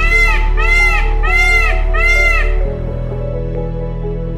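Indian peafowl (peacock) giving a rapid series of short honking calls, each rising then falling in pitch, about four in quick succession that stop about two and a half seconds in. Soft background music plays under them.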